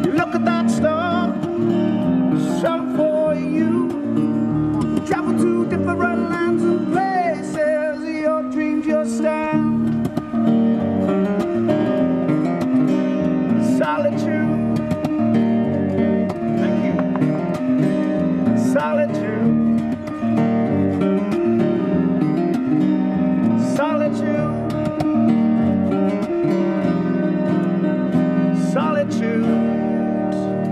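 Acoustic guitar played fingerstyle through a small busking amplifier: a continuous run of plucked notes and chords.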